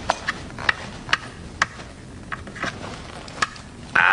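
Stone game pieces clicking down onto a wooden game board: about eight sharp clacks at uneven intervals.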